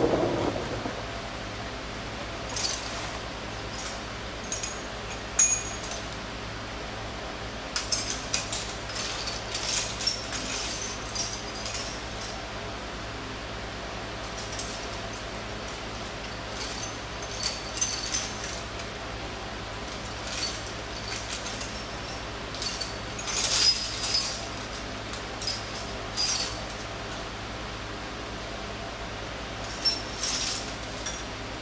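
Metal hand tools clinking: sockets and a ratchet being picked up, fitted and worked in short bursts of sharp clicks and clinks, with pauses between, over a steady low hum.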